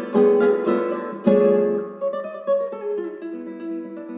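Solo classical guitar, a Luthier L Nine.C with cocobolo back and sides, played live: two loud struck chords in the first second and a half, then a quieter line of single notes that ring on.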